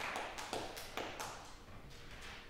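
Scattered hand claps from a small audience, the tail of a round of applause, thinning to a few last claps that stop about a second and a half in.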